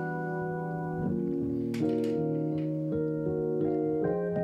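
Keyboard playing slow, ambient music: held chords that sustain and change to new chords about one second in, again about two seconds in, and near the end.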